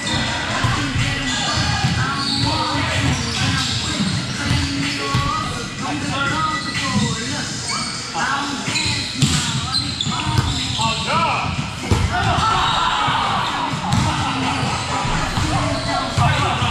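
Volleyballs being struck and bouncing on a gym floor, repeated sharp impacts amid people's voices.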